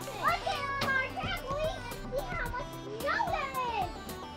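Young children's voices calling out and squealing in high, gliding tones, without clear words, over background music.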